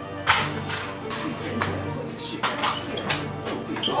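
Background film music with steady sustained tones, with several sharp knocks and a clink over it.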